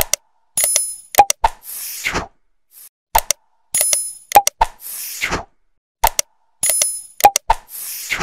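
Sound effects of a like-and-subscribe animation: a click, a short high ringing ding, two quick pops and a whoosh. The same sequence repeats three times, about every three seconds.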